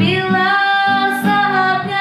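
A woman singing a slow song, holding long notes, accompanied by a strummed acoustic guitar.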